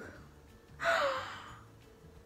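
A woman gasps sharply in surprise about a second in: a quick rush of breath with a short falling cry in it, trailing off.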